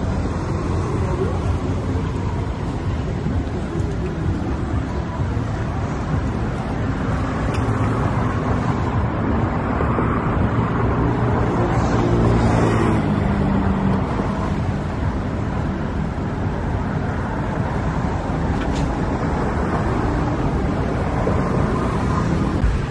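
Steady road traffic noise, with one vehicle's engine passing close and louder about ten to fourteen seconds in.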